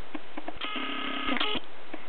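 A baby's coo: one steady, held vocal sound about a second long, starting about half a second in and dipping slightly in pitch as it ends.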